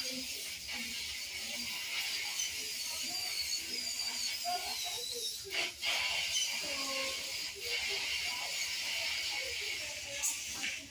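Dental equipment running during root canal work: a steady high hiss, as of the suction, with a thin high whine from a handpiece that wavers in pitch. Faint muffled talk lies underneath.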